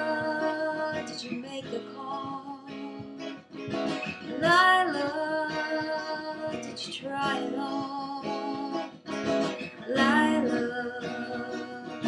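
A woman singing long, wavering notes over a strummed acoustic guitar, one sung note swelling about four seconds in and another near the end.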